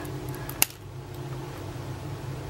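A single sharp click a little over half a second in as the snap-on cap of a Platinum Preppy fountain pen is pulled off, over a low steady hum.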